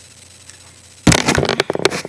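Camera being handled and moved: quiet room tone, then, about a second in, a sudden loud run of crackling and knocking against the microphone.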